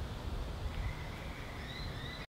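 Outdoor background noise: a low rumble, with a faint, thin, steady high-pitched tone coming in about a second in.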